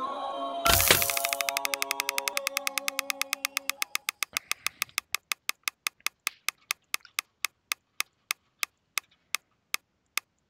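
Online mystery-box spinner sound effect from the Lootie site: a sharp crack as the spin starts, then rapid ticks, about ten a second at first, that slow steadily to about three a second as the reels decelerate. Background music fades out in the first few seconds.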